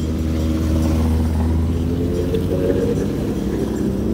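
A group of escort motorcycles riding past close by, their engines giving a steady low hum that fades near the end as they move away.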